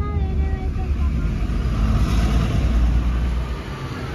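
Low, steady engine and road rumble of a moving vehicle, heard from on board, easing off near the end.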